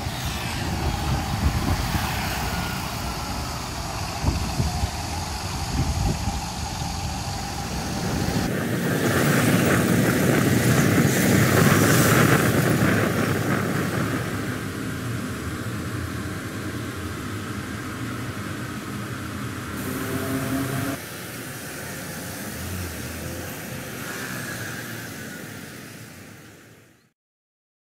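Outdoor street traffic noise: a steady hum of passing cars and scooters, with one vehicle passing louder about ten to thirteen seconds in. The sound changes abruptly twice, about eight seconds in and again about twenty-one seconds in, where separate street recordings are joined.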